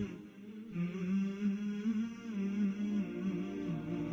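Background vocal music: a low voice chanting in long, wavering held notes, with a short break just after the start.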